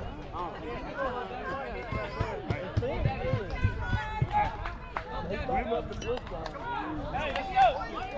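Spectators talking at once behind the backstop, indistinct overlapping chatter with a few sharp clicks, and one louder call near the end.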